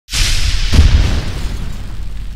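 Cinematic boom sound effect for a logo intro. It starts suddenly, a deeper hit lands just under a second in, and then it rumbles as it slowly fades.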